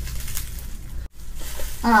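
Plastic bubble wrap crinkling and rustling as it is pulled off a boxed vinyl figure, faint over a steady low hum. The sound cuts out completely for a moment about a second in, and a short 'Oh' is spoken at the end.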